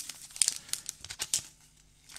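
Clear cellophane wrapping on paintbrushes crinkling as the brushes are handled, a quick run of sharp crackles lasting about a second and a half.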